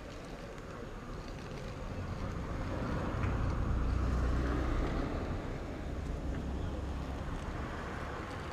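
A car passing on the street: a low rumble with tyre noise that swells to its loudest about four seconds in, then fades.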